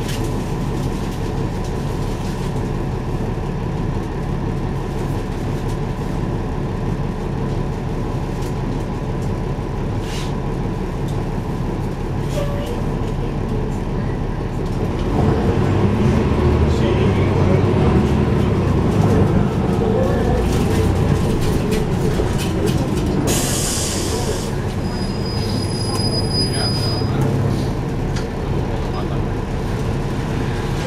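NABI 416.15 transit bus heard from inside at the rear: the engine and drivetrain rumble steadily, growing louder for several seconds past the middle as the bus pulls harder. Near the end comes a short sharp hiss, then a high steady tone lasting about two seconds.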